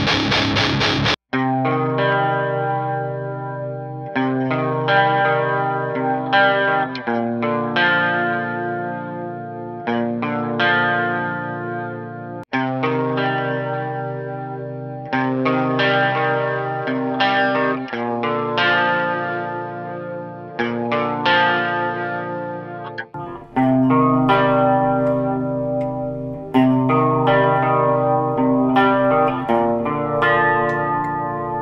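Squier Jazzmaster electric guitar through a Line 6 Vetta 2 head into Celestion Vintage 30-loaded 2x12 cabs, playing a chord pattern: a dense chord cuts off about a second in, then ringing chords are struck every two to three seconds, each sustaining and fading. It starts on the Harley Benton cab, and after a short break about 23 seconds in the pattern goes on through the Orange PPC 2x12.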